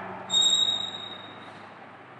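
Chalk squeaking on a blackboard as a line is drawn: one sudden high-pitched squeal about a third of a second in, fading away over about a second.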